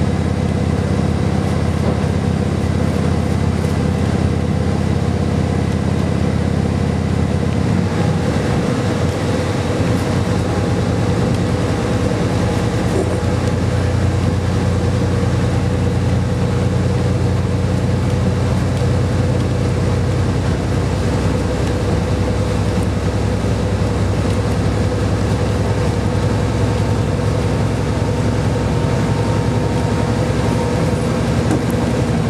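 Cabin sound of a KiHa 40 series diesel railcar under way: the underfloor diesel engine runs steadily over the rumble of wheels on rail, and the engine note shifts about eight seconds in.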